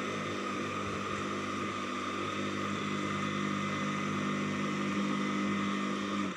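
Electric motor of an AL-KO Easy Crush MH 2800 garden shredder running steadily with no load and its blade removed: an even hum with a steady high tone above it.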